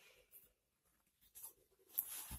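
Near silence: room tone with two faint, brief rustles, one about a third of a second in and one near the middle.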